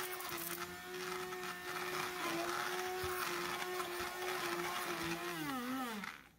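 Hand-held electric immersion blender running steadily with a motor whine, puréeing softened spinach into a paste in a stainless steel pot. Near the end the pitch drops as the motor winds down and stops.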